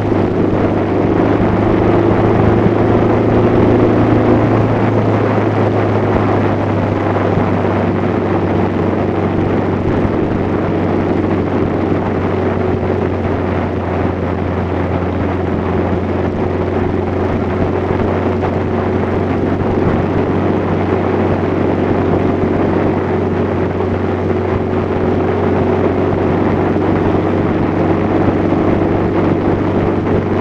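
Motorcycle engine running steadily at cruising speed: an even low drone with wind rush over it. A few higher engine tones show in the first few seconds and then settle.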